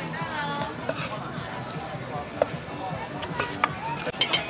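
A cleaver knocking on a thick wooden chopping block, a few separate strikes, with voices and music in the background.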